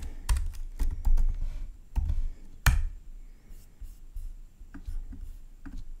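Computer keyboard typing: a quick run of keystrokes, with one sharper, louder stroke about two and a half seconds in, then a few softer, scattered clicks.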